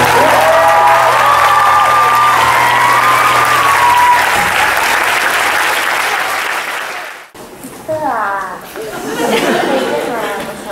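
Audience applauding in a hall, with voices calling out over it in the first few seconds. The applause cuts off abruptly about seven seconds in.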